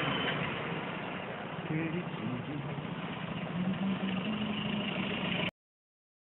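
A steady noisy rumble like a vehicle engine running, with faint voices in it, that cuts off suddenly about five and a half seconds in.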